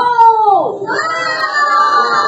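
Children shouting a long drawn-out "no": one high child's voice rising then falling, joined about a second in by several children's voices calling it together and holding it with slowly falling pitch.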